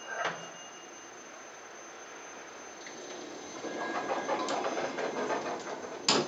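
Public lift's car and machinery running in the shaft: a click just after the start, then a mechanical whirring and rattling that grows louder from about three and a half seconds in as the car arrives at the station.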